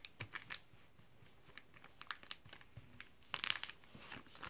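Plastic packaging crinkling as it is handled by hand: a few scattered crackles, then a longer rustle about three and a half seconds in.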